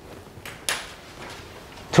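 Low room tone in a pause between a lecturer's sentences, broken by a brief sharp rustle a little over half a second in.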